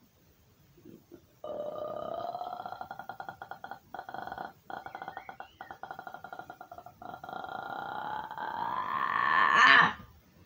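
A long, rasping, croaking voice-like sound, pulsing rapidly on a steady pitch with a few short breaks. It starts about a second and a half in, swells steadily louder near the end and cuts off suddenly.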